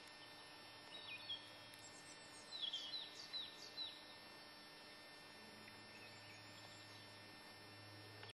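Faint bird chirps: a few short, high, descending calls between about one and four seconds in, with a couple of fainter ones later, over a low steady hum.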